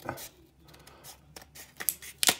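Scissors snipping at a plastic blister card pack, a few short sharp clicks in the second half.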